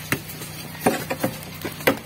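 Steel wrecking bar knocking and prying against wooden concrete formwork on a beam as the forms are stripped: several sharp, irregular knocks, the strongest just after the start and near the end.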